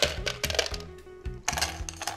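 Ice cubes clinking against a glass balloon (copa) gin glass and each other as they are settled in it by hand, a scatter of sharp clicks, over background music.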